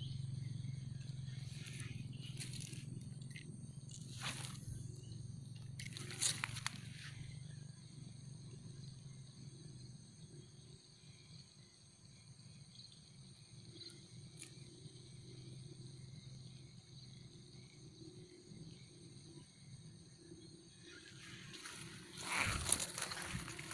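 Faint outdoor ambience on a pond bank: a steady insect chorus of several high, unbroken tones, with a low hum that fades after about ten seconds. A few brief rustles or handling sounds come in the first seven seconds and once more near the middle.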